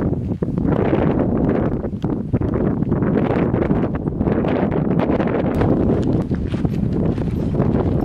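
Strong wind buffeting the microphone in gusts, with footsteps on loose volcanic gravel.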